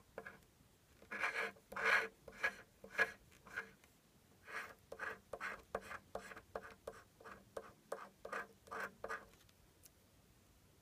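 A scratch-off lottery ticket's coating being scratched away in short scratching strokes, about two a second, with a brief pause about four seconds in, stopping shortly before the end.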